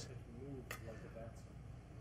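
A quiet pause: a faint hummed murmur from a man tasting food, and a single light click about two-thirds of a second in, typical of a fork touching a china plate.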